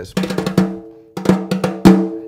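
A pair of broomsticks (bundled natural broom corn rods) played on a snare drum: a run of quick strokes, a short pause about halfway, then more strokes ending on the loudest hit near the end, the drum ringing under them. A warm, fat sound.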